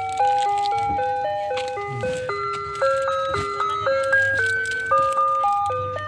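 An ice cream truck's chime jingle playing a simple melody of clear, electronic-sounding notes in two parts, stepping from note to note several times a second.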